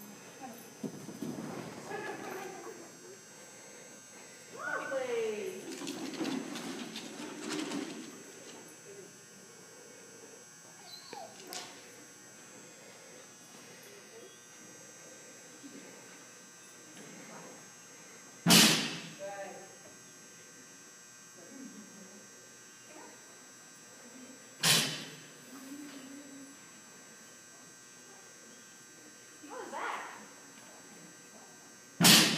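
A person's voice calling during a dog agility run, with two sharp bangs about six seconds apart that are the loudest sounds.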